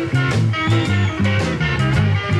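Live electric blues band playing an instrumental passage: electric guitar over a walking bass line and drums keeping a steady beat with cymbals.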